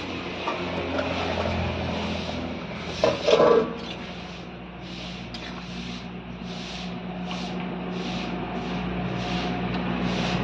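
Metal spatula scraping and stirring potatoes boiling in water in an iron kadai, in strokes about twice a second, with a brief louder clatter about three seconds in as the steel plate used as a lid is handled.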